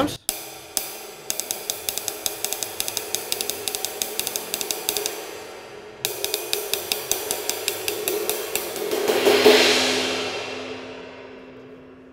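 Hand-made 20¾-inch, 1845-gram flat ride cymbal (Prism series) played with a wooden drumstick: a fast run of taps on the bow, then more taps that build to a louder wash about nine and a half seconds in, which dies away slowly.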